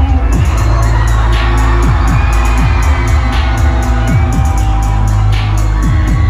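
Loud live hip-hop music through a concert PA: a heavy, sustained bass with bass notes that slide downward over and over, and rapid hi-hats on top, with a crowd cheering underneath.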